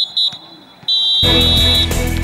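Referee's whistle blown twice short and then once long, the three-blast signal for full time. Loud music comes in about a second in and runs under the long blast.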